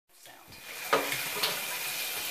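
Steady hiss of water running into a bathtub while a wet cat is being shampooed, with one sharp knock about a second in.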